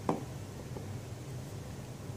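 Quiet room tone with a steady low hum, with a brief faint voice sound right at the start; the gentle swirling of the small plastic test vial makes no distinct sound.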